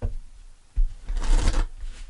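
A deck of tarot cards being shuffled by hand. There is a brief rustle at the start, then a longer run of rasping card noise from about a second in.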